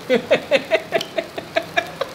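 A man laughing hard: a long, unbroken run of rapid "ha" pulses, about six a second.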